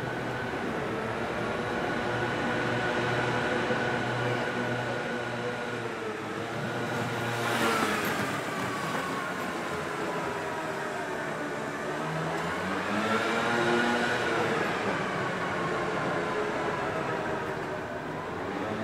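Engines of motor vehicles passing close by. One goes by about eight seconds in, its pitch dropping as it passes; another rises in pitch and grows louder around thirteen seconds, then fades.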